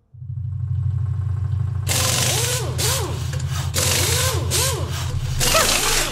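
Construction noise: a steady low machine hum starts just after the beginning, and about two seconds in harsh, irregular power-tool grinding joins it, with a whining pitch that rises and falls over and over.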